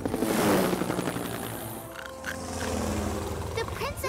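Cartoon flying vehicle sound effect: a rushing whoosh in the first second as the craft flies past, then a steady low engine hum, under soft background music.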